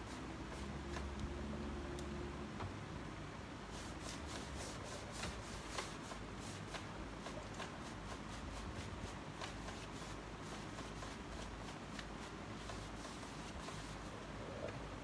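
Small paintbrush dabbing and stroking chalk paint onto a wooden dresser: a quick, irregular run of short brushy taps and scrapes, working the colours into a blend.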